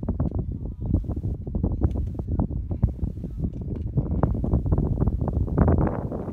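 Wind buffeting the microphone: a loud, uneven rumble with constant gusty jolts.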